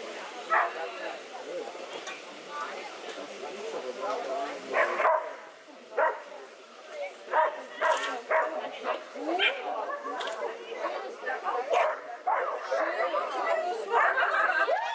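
A dog barking in short, separate barks, about eight spread irregularly through the run, mixed with a handler's short called commands.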